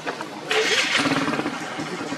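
Background voices mixed with a motorbike engine, which grows suddenly louder about half a second in.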